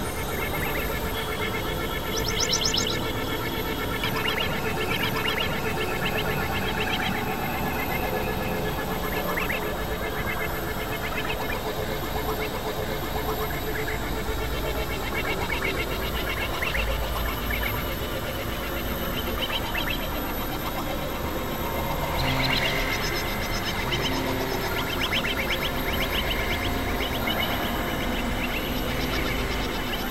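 Experimental electronic noise music from Korg Supernova II and microKorg XL synthesizers: a dense, steady wash of drones layered with fast pulsing, chirping textures, flaring up twice.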